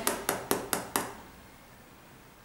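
Fingers rubbing quickly back and forth over the sole of an Air Jordan 11 sneaker: five short scratchy strokes about four a second, stopping about a second in.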